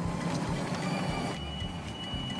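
Golf cart driving, a steady mechanical rattle and rumble, joined about a second in by a steady high whine.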